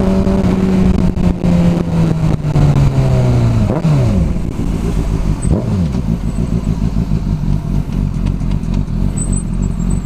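Sport motorcycle engine as the bike slows: its note falls steadily, jumps up in a few quick sweeps around four seconds in as it is shifted down, then settles to a low, steady running sound as the bike pulls over and stops.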